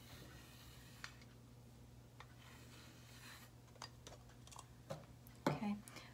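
Faint pencil scratching on paper while tracing around a plastic cup, with a few light clicks and taps as the cup is handled and moved; a low steady hum runs underneath.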